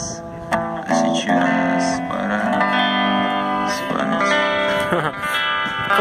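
Electric guitar strummed, its chords ringing out in the closing bars of a song.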